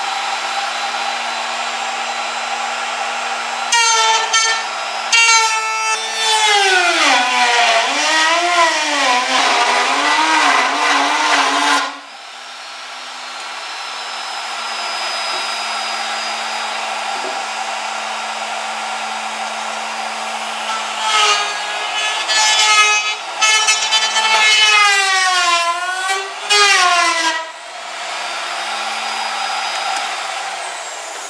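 Router running in a homemade router table while 2x6 tongue-and-groove decking is fed past the bit to recut its groove. Twice, from about four to twelve seconds in and again from about twenty-one to twenty-seven, the motor's whine gets louder and dips and wavers in pitch as the bit cuts under load.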